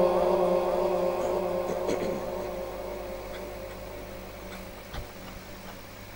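The last held note of Quran recitation dying away through the PA system's echo, fading slowly over several seconds. A faint low hum remains, with a single soft click about five seconds in.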